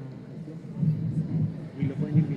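Indistinct male speech that the transcript does not pick up, a low voice talking off the main microphone.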